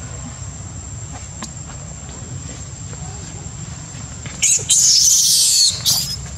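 A baby macaque screams: loud, harsh, high-pitched bursts lasting about a second and a half, starting past the middle. A steady low hum runs underneath.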